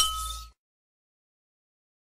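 A short fading tail of sound with a thin steady tone for the first half second, then complete digital silence: the gap between two tracks.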